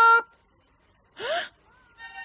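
A loud vocal cry held on one pitch, cut off just after the start, then a short breathy gasp rising in pitch about a second and a quarter in: a startled reaction voiced for a cartoon character.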